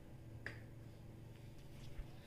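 Very quiet room with a faint low hum and a soft, short click about half a second in, with another near the end.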